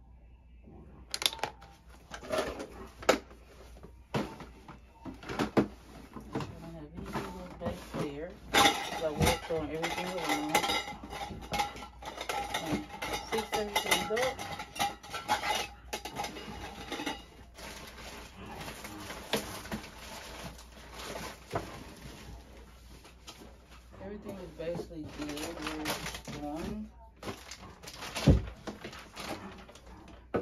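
Empty plastic lip-gloss tubes and a clear plastic storage box being handled and a plastic drawer unit rummaged through: a string of short clicks, clatters and knocks. A voice is heard at times.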